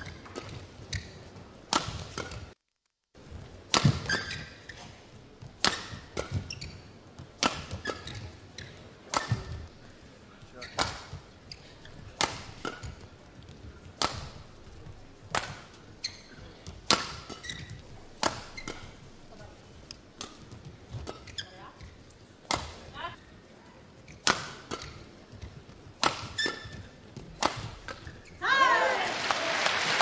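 Badminton rally: a shuttlecock struck back and forth by rackets, one sharp hit about every second over many exchanges, with short squeaks of court shoes between shots.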